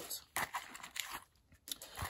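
Faint rustling and crinkling of paper receipts being pulled out of a wallet: a few short rustles, with a brief quiet moment in the middle.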